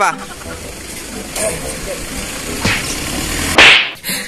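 Steady outdoor background noise with a low rumble, then a short, loud whoosh about three and a half seconds in.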